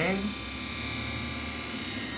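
Electric grooming clipper running with a steady hum as it is pushed through faux fur, testing whether a freshly sharpened blade cuts.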